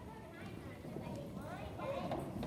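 Children's feet shuffling and stepping on a hollow wooden stage, many short knocks, with high children's voices chattering briefly.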